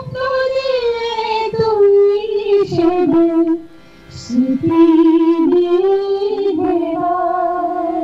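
A woman singing a Bengali song solo into a handheld microphone, with long held notes and a short breath pause about halfway through.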